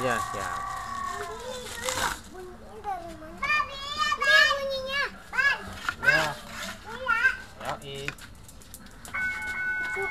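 Children chattering in high voices around a street drinks cart. Near the end a steady tone of several held pitches comes in.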